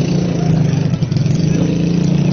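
A motor vehicle's engine running steadily close by, a loud, even low hum.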